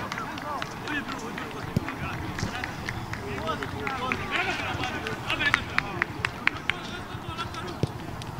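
Several people talking and calling out at once, overlapping, with a run of short sharp clicks between about five and seven seconds in.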